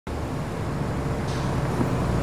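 Slow road traffic: a van's engine running as it creeps forward, a steady low rumble with a hiss over it.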